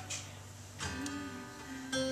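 Acoustic guitar played softly in an instrumental passage, over held notes from the accompanying instruments; fresh chords are struck about a second in and again near the end.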